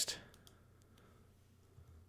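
A few faint clicks from a computer mouse and keyboard: the text tool is clicked into place and typing begins near the end.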